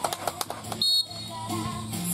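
A referee's whistle, one short high blast about a second in, over background music and voices.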